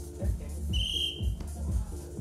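A referee's whistle sounds one steady blast of about two-thirds of a second, a little under a second in, as one wrestler is brought down. Under it, dance music plays with a steady fast beat.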